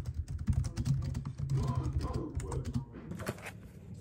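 Typing at normal speed on a split ergonomic computer keyboard: a quick, uneven run of key clicks that thins out in the last second or so, over a low steady hum.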